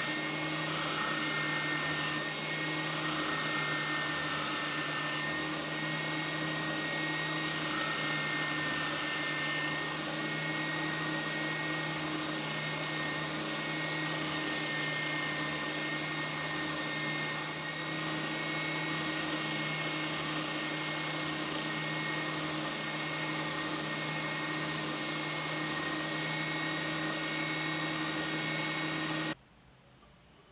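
Benchtop spindle sander running with a steady motor hum while a wooden strip is pressed against its sanding drum to round off its end; the sound cuts off abruptly just before the end.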